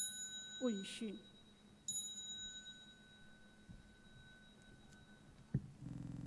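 A small ritual bell struck twice, about two seconds apart, each stroke ringing high and fading, over a lower bell tone that rings on until near the end; the strokes cue the bowing and rising of the prostrations. A voice calls out briefly twice after the first stroke, and a sharp knock sounds near the end.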